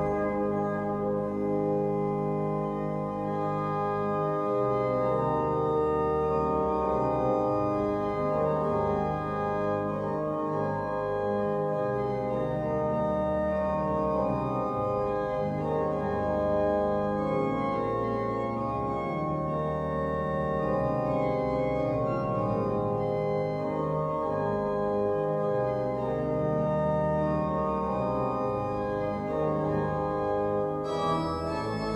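Pipe organ playing full sustained chords that change every second or so, over held pedal bass notes.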